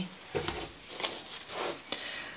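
Tarot cards being handled on a table: a few faint, brief rustles and taps.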